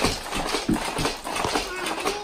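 Baby bouncer (Fisher-Price Jumperoo) knocking and rattling in an uneven rhythm as an infant bounces in it, with voices over it.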